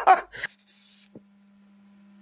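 The end of a man's short laugh, then a quick inhale of e-cigarette vapour: a brief airy hiss lasting about half a second, followed by a faint click and a faint steady hum.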